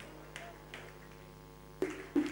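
A lull with a steady low hum and two faint ticks, then a short sharp sound near the end.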